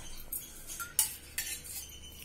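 Steel ladle stirring thick batter in a steel bowl, with a few light clinks of metal on metal.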